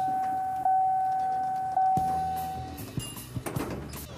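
A single steady chime tone, renewed about once a second, fades out; then elevator doors slide shut with a low rumble and a couple of knocks near the end.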